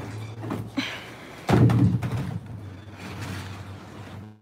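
A hard plastic kiddie pool being handled on its stack, giving one heavy, dull thud about a second and a half in, over a steady low hum.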